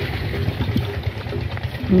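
A steady low engine rumble, like an engine idling, with a few faint clicks over it.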